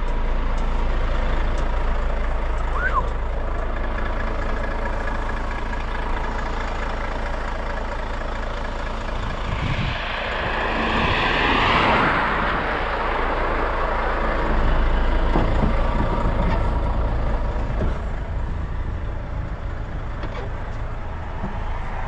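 Volvo truck's diesel engine idling steadily close by, with the noise of a passing vehicle swelling and fading about ten seconds in.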